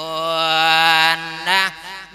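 A monk's voice chanting a melodic sung sermon (Isan thet lae) into a microphone. He holds one long, steady note for just over a second, then sings a short syllable.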